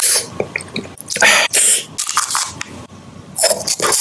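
Close-miked eating sounds: a mouth chewing and biting into food, with loud, hissy wet bursts about a second in and again near the end.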